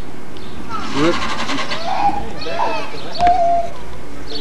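A few short, wordless vocal sounds rise and fall, and a brief steady high note comes about three seconds in. Under them runs a constant background hiss and hum.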